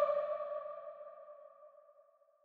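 The closing two-note chord of a layered soprano choir, one singer's voice doubled and blended with a virtual female choir, held and dying away in a long hall reverb. It fades out smoothly and is gone by about a second and a half in.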